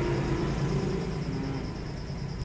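Mahindra Scorpio's engine idling with a steady low hum.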